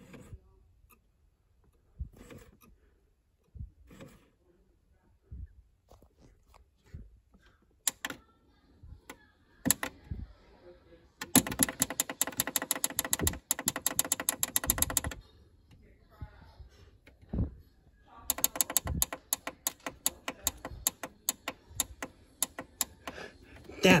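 DVD player's front-panel buttons clicking and its disc-tray mechanism clicking and buzzing as it tries and fails to eject. At first there are scattered single clicks. About eleven seconds in, a rapid run of clicks with a buzz lasts about four seconds, and a second run starts a few seconds later and goes on to the end.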